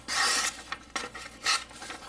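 Kubey KU203's D2 steel blade slicing through a sheet of paper, a rasping cut: one long stroke at the start and a shorter one about one and a half seconds in. It is an edge test on a blade that has not been sharpened since it was new.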